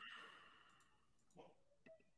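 Near silence, with a few faint clicks about one and a half and two seconds in.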